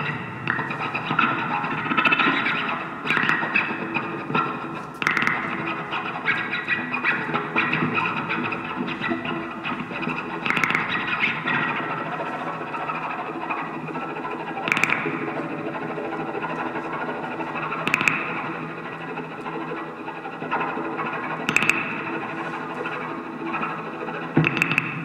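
Free-improvised experimental music: a dense, continuous, effects-processed texture of many overlapping tones, broken by about six sharp clicks at irregular intervals.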